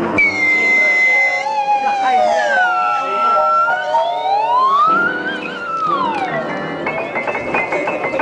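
A high whistling tone, held and then sliding down, up and down again in pitch, from a whistle blown at the mouth. Piano notes come in near the end.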